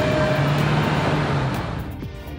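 A car driving past close by in street traffic, its engine and tyre noise steady, then dying away near the end.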